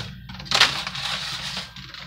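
Plastic bag rustling and crinkling as a hand rummages in a refrigerator's crisper drawer: a burst about half a second in that dies away over about a second.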